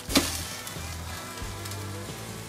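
A sharp thump as a bone-in tomahawk steak is dropped straight onto glowing lump charcoal, followed by steady sizzling and crackling of the meat and fire on the coals, under background music.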